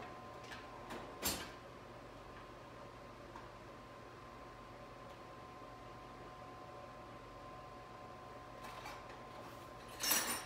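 Mostly quiet room tone with a faint steady hum, broken by a sharp click about a second in and a few faint knocks near the start and end: hand tools being picked through to find a wrench.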